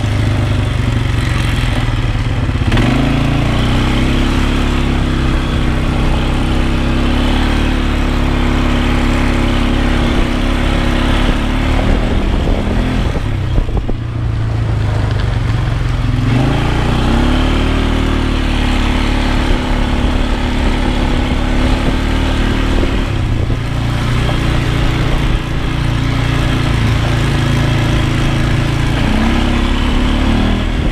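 Polaris ATV engine running under throttle on a dirt trail. Its note climbs and holds, then eases off about halfway through and picks up again, and it rises and falls once more near the end.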